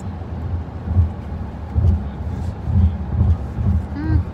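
Low rumble inside a car cabin, with irregular low swells.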